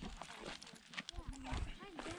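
Footsteps on a dirt trail, light irregular steps, with faint voices talking in the distance.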